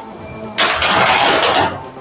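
A loud rushing, rattling noise lasting about a second: a large thin sheet-metal panel flexing and sliding onto the steel table of a corner-forming machine, over faint background music.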